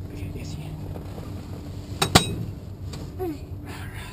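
Two sharp metallic clicks close together about two seconds in, as the buckle of a light aircraft's seat harness is released, over a steady low background noise.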